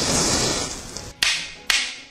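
Logo-sting sound effects: a loud whoosh that fades away over about a second, followed by two sharp whip-like cracks about half a second apart.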